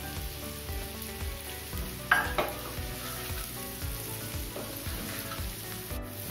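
Amla (Indian gooseberry) pieces sizzling in hot mustard oil in a pan as ground spices are added and a wooden spatula stirs them, scraping repeatedly against the pan. A louder clatter comes about two seconds in.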